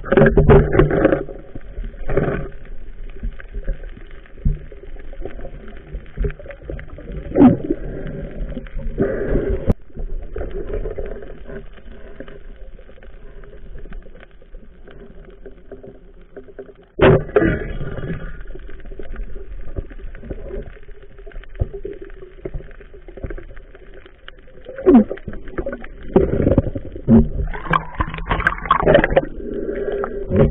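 Muffled water sloshing and gurgling picked up by a camera held underwater, with irregular knocks and thumps, the loudest a sudden burst about 17 seconds in.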